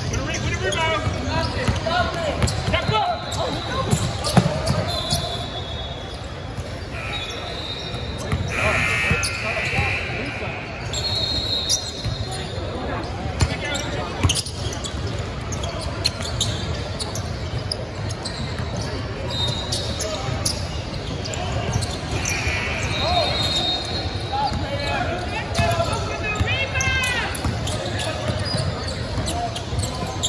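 Basketball bouncing on a hardwood court in a large echoing gym, with voices of players and spectators throughout. Several short, high sneaker squeaks are heard along the way.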